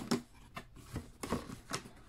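Cardboard box being handled: the lid and a die-cut handle flap are pulled and pressed, giving a sharp tap at the start and then a few light scrapes and rustles of the card.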